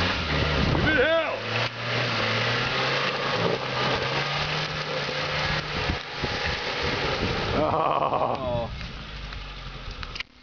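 Suzuki Samurai's four-cylinder engine working at steady revs as it crawls up a steep dirt slope, over a steady rush of noise; the engine tone fades about six seconds in.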